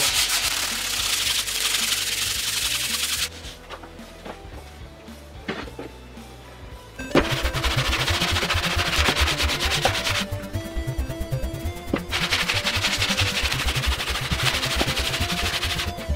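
For the first three seconds, a hand rubs a pad over the wooden bench top with a gritty rasp, wiping it clear of debris. From about seven seconds in, the cast-iron sole of a vintage Stanley bench plane is pushed back and forth over sandpaper on the bench, a rhythmic rasping scrape as the sole is ground flat. The strokes pause for about two seconds in the middle of this run.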